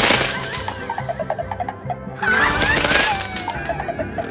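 Online slot game sound effects: a sudden crackling burst as skull symbols explode, then a second burst about two seconds in. Short plucked notes and whistling pitch glides play over Mexican-style guitar music.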